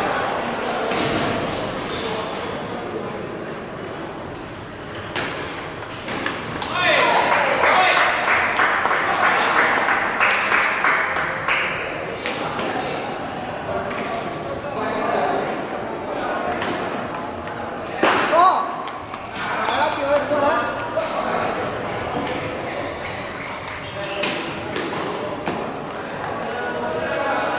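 Table tennis balls clicking off tables and bats in scattered, irregular rallies on several tables in a hall. Voices talk at times, most clearly about a third of the way in.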